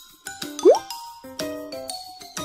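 Light background music with a quick rising pop sound effect, the loudest thing, a little over half a second in.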